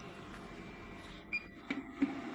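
A few light clicks and knocks from hands handling the machine's metal control panel in the second half, over a steady low background noise.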